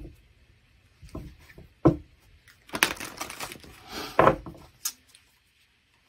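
Tarot deck being shuffled by hand: a run of short card knocks and taps with a longer rustle of cards in the middle, falling quiet near the end.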